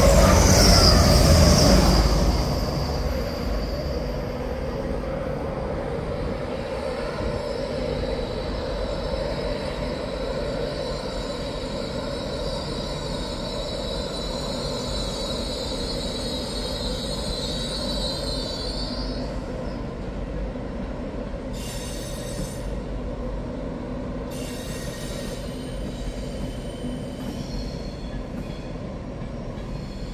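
A Grand Central Class 180 diesel multiple unit runs past close by, loud for the first couple of seconds and then fading to a steady train rumble. A high, thin wheel squeal from train wheels on the rails runs on until about two-thirds of the way through, then stops.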